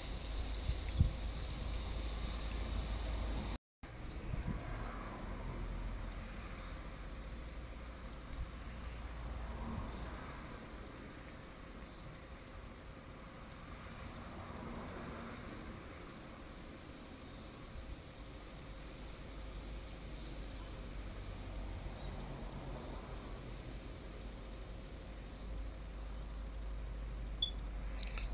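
A faint high chirp repeating about every two seconds, an animal calling, over a low steady rumble. The sound cuts out completely for a moment about four seconds in.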